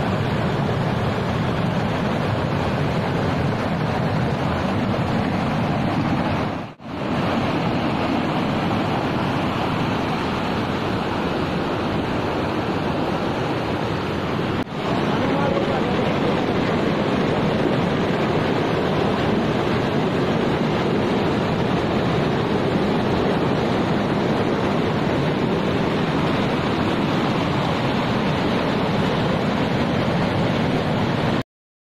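Rushing water of a mountain stream tumbling over boulders in small cascades, a steady loud roar, broken by two brief dips in level, one about a quarter of the way in and one about halfway.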